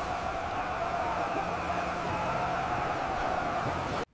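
Steady rushing noise of surging floodwater, with faint held tones underneath. It cuts off suddenly at the end.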